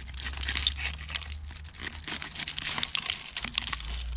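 Digging rake working through soil packed with broken bottle glass: a dense run of small glass clinks and scrapes.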